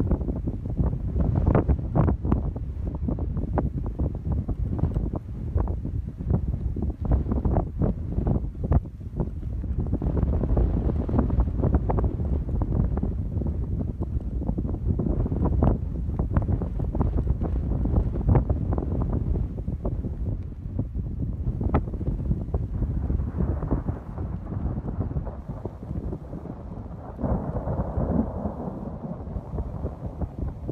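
Gusty wind buffeting a cell phone's microphone: a loud low rumble broken by rapid crackling gusts, easing a little in the last few seconds.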